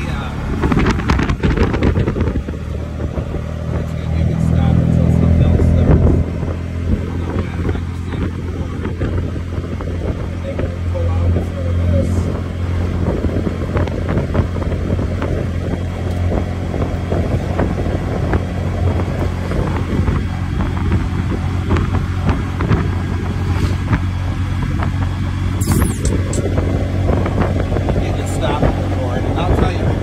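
Small tuk-tuk engine running while under way, heard from inside the open passenger cab. The engine note rises and gets louder for a couple of seconds about four seconds in as it accelerates, then settles back to steady running.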